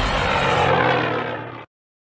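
The tail of an intro soundtrack: a dense, sustained rushing sound with a held low note fades away and cuts off to silence near the end.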